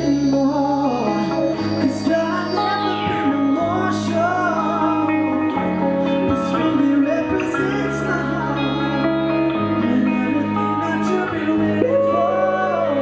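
Live band playing: a male voice singing over an electric guitar, bass, piano and drums, with held bass notes changing every couple of seconds and occasional cymbal hits.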